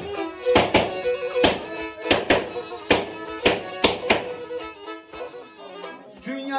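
Black Sea kemençe, the small three-string bowed fiddle, playing a folk tune, with loud sharp knocks about once or twice a second keeping time. Both grow quieter near the end.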